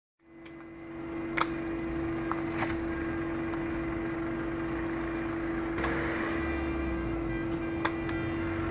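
A motor running steadily, a constant hum with a noisy background, fading in at the start. A few brief sharp cracks stand out over it.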